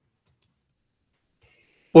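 Near silence, broken near the start by two faint, short clicks a fraction of a second apart; a man's voice starts right at the end.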